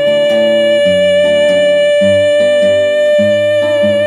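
A soprano voice holding one long, steady high note, with a nylon-string classical guitar plucking changing notes beneath it.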